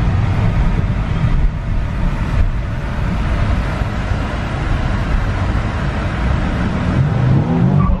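Cabin sound of a Nissan Z sports car's V6 engine pulling hard under acceleration, mixed with road noise, fairly loud and steady. It is driven hard enough to bring in the traction control.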